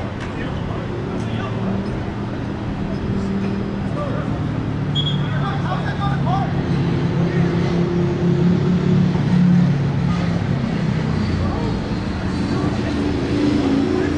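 A motor vehicle's engine hum, low and steady, swelling to its loudest around nine to ten seconds in and then easing, under scattered distant shouts of players on the field.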